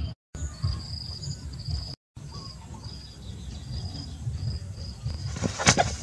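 Insects chirping in a high, evenly repeated pattern over a low rumble. Near the end comes a short burst of loud flapping and scuffling from a rooster's wings.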